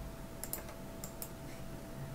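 About four light computer-mouse clicks in two quick pairs, over a faint steady hum.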